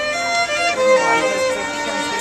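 A string trio of violins and a viola playing a piece together, bowed notes following one another several times a second.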